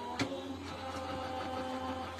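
Electric die-cutting machine running with a faint, steady motor hum while a die is fed through, with a small click a fraction of a second in.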